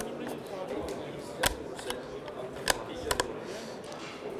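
Detachable box magazine of a Browning A-Bolt III rifle clicking as it is handled and latched into the rifle: a sharp click about a second and a half in, another near three seconds, then a quick double click.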